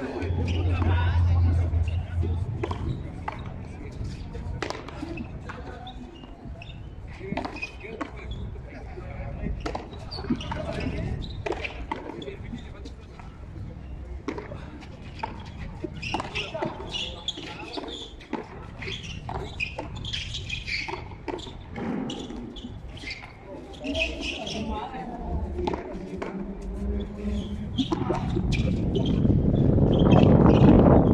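A frontón a mano rally: a ball struck by bare or gloved hands and rebounding off the concrete wall and floor, a scattered series of sharp smacks, with voices calling out between shots. A broad rush of noise swells near the end and becomes the loudest sound.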